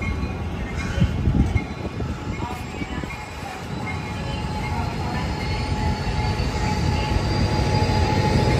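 Amtrak Capitol Corridor passenger train pulling out of the station, pushed by its SC-44 Charger diesel-electric locomotive at the rear: steady low rumble of the cars rolling on the rails, growing louder in the second half, with a faint whine slowly rising in pitch.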